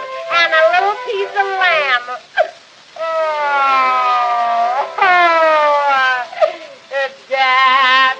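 Music from a 1910 Edison wax cylinder recording of a comic vaudeville song, in a break between sung lines: long sliding, siren-like notes that fall slowly in the middle and jump sharply upward about five seconds in, with the thin, band-limited sound of an early acoustic recording.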